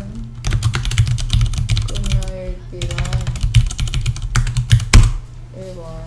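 Typing on a computer keyboard: a quick run of key clicks lasting about four and a half seconds, ending in a sharp key strike about five seconds in.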